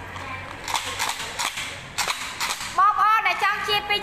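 A product packet being handled and crinkled, making a string of sharp crackling snaps for about two seconds; a woman starts speaking near the end.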